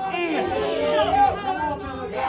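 Speech only: voices of the congregation calling out, too indistinct for words to be made out.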